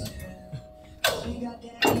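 Weight-stack plates of a selectorized adduction/abduction machine clanking down once, about a second in, as the load is let go.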